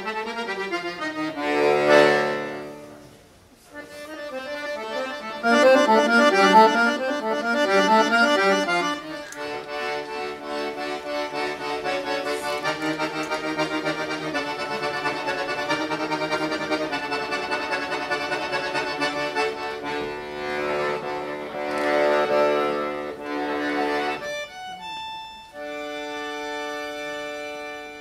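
Accordion playing: a loud chord, a brief drop, then fast runs of notes, followed by a long passage of held chords.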